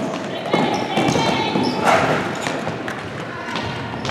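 Futsal game noise in a gymnasium: raised shouts from players and spectators, loudest about two seconds in, with a few thuds of the ball being kicked and bouncing on the wooden floor.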